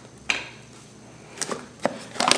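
A cardboard film box is handled and picked up off a wooden table, giving a few light knocks: one soon after the start and two in the second half.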